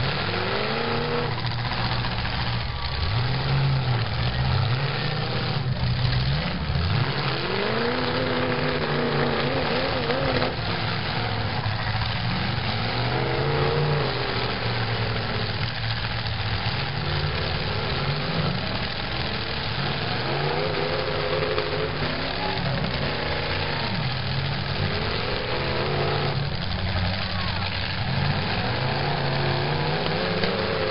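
Demolition derby cars' engines revving again and again, each rev rising and falling in pitch over a steady low rumble, as the cars push against one another. A few knocks of metal contact are mixed in.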